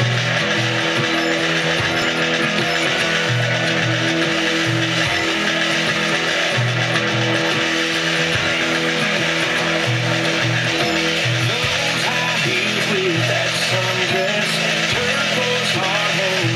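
Country music playing on an FM radio station.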